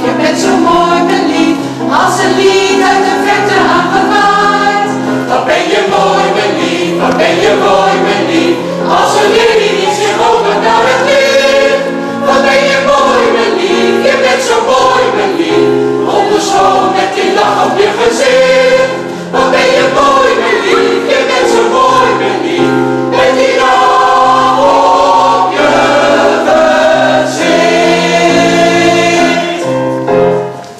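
Mixed choir of women and men singing in harmony, sustained and loud, with a brief breath about two-thirds of the way through.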